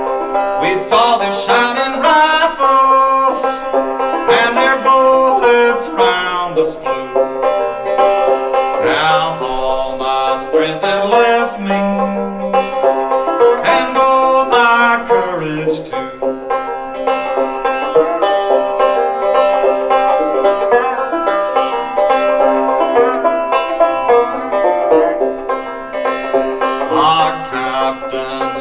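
Open-back banjo played alone, a continuous run of plucked notes in an instrumental break.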